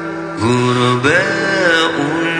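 Arabic nasheed: a male voice chanting long, gliding melismatic notes over a steady held drone.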